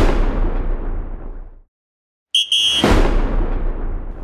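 Transition sound effect for a title wipe: a deep boom that dies away, a brief dead silence, then a short high tone and a second deep boom about three seconds in.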